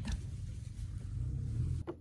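A steady low background rumble with no speech, cutting off suddenly near the end.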